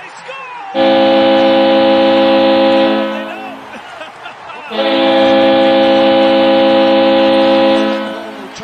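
Ice hockey goal horn, the New York Islanders' horn as a manufacturer's audio sample: a steady chord of several tones sounded in two long blasts, about two and three seconds long, with a short gap between them.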